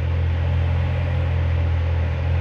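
2018 Chevrolet Corvette Z06's 6.2-liter supercharged LT4 V8 idling steadily, a low, even sound with no change.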